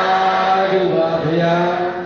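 A Buddhist monk's voice chanting in long, held, melodic notes that step slowly up and down in pitch, with a short dip about a second in.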